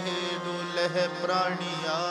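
Sikh kirtan: a male voice singing a drawn-out, ornamented melodic line without clear words, over a steady low drone.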